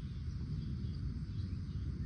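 Faint, short rising bird chirps, taken for the red-winged blackbirds that nest at the pond, over a steady low outdoor rumble.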